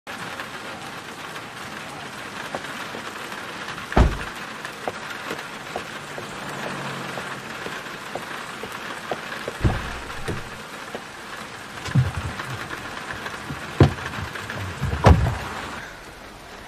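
Steady rain falling, broken by five sharp thuds spread through it; the loudest comes about four seconds in and another near the end.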